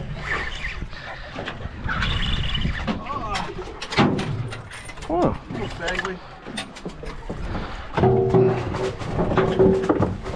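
Spinning fishing reel being cranked, its gears turning as a hooked fish is wound in.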